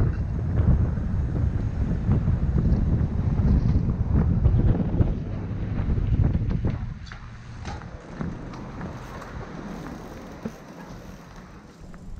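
Wind buffeting the microphone of a helmet camera on a mountain bike descending fast down a paved road, as a heavy low rumble. About seven seconds in it drops away as the bike slows, leaving quieter rolling noise with scattered clicks and knocks from the bike.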